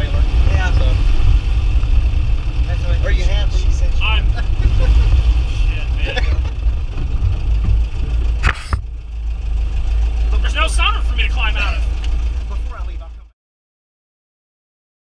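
Air-cooled VW Beetle's flat-four engine and road rumble heard from inside the cabin while driving, a steady deep rumble with voices over it. A single sharp knock comes about eight and a half seconds in, and the sound cuts off suddenly near the end.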